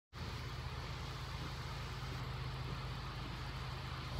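A chainsaw idling steadily: an even, low engine hum.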